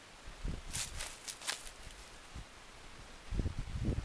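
Dry fallen leaves and grass rustling and crunching as a person shifts position on the ground: a few short crackly rustles about a second in, then low thuds and scuffs near the end.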